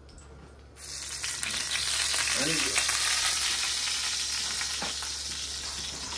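Hot cooking oil in a cast-iron skillet starts sizzling loudly about a second in as a test piece is dropped in, and keeps sizzling, easing slightly: the oil is hot enough to fry.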